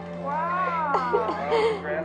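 Newborn baby crying in wails that rise and fall in pitch, over a steady low music drone.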